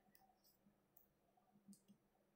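Near silence with a few faint clicks, the most noticeable a little before the end: computer mouse clicks as the presentation advances to the next slide.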